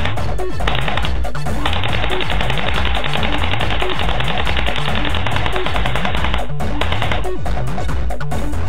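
Airsoft MP40 replica firing on full auto: a short burst about a second in, then one long run of rapid shots lasting about five seconds, and a brief burst near the end. Background electronic music with a steady beat plays under it.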